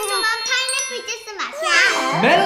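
A young girl's high-pitched voice, exclaiming and speaking, with a light tinkling chime behind it.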